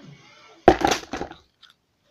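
A sharp knock about two-thirds of a second in, trailing off in a brief clatter, then a couple of faint clicks near the end: a wooden kendama being handled and set down.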